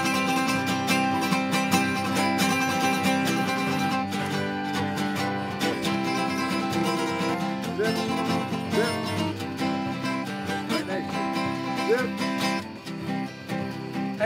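Steel-string acoustic guitar playing an instrumental break in a folk song, with no singing. The playing drops a little quieter near the end.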